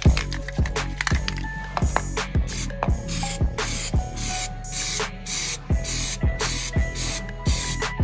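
An aerosol spray can hissing in a quick run of short bursts, starting about two seconds in, over background music with a steady beat.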